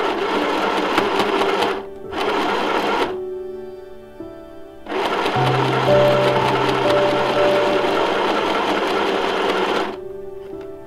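Small white mini sewing machine stitching the edge of a fabric piece, running in bursts: about two seconds, a brief stop, about a second more, then a pause of nearly two seconds before a long run of about five seconds. Background music plays underneath.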